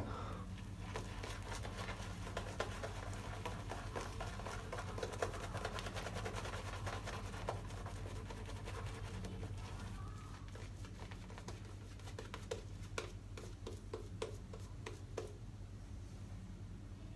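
Shaving brush working tallow-based shaving-soap lather over the face: a faint, dense scratchy crackle of bristles and lather on skin, thinning after about ten seconds to scattered clicks.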